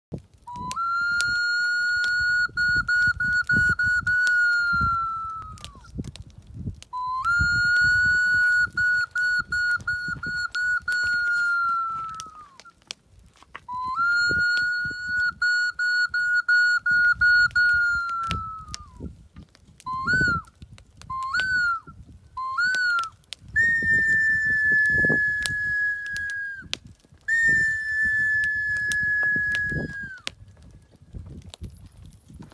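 A small hand-held whistle blown in long calls. First come three notes of about five seconds each, held steady with a fast fluttering trill partway through. Then come three short upward chirps, and then two longer, slightly higher notes that sag a little in pitch.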